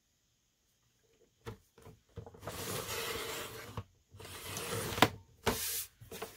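Carl sliding paper trimmer's blade carriage run along its rail to cut a thin sliver off a sheet of paper. There are two long sliding strokes a little after two seconds and about four seconds in, then a sharp click at about five seconds.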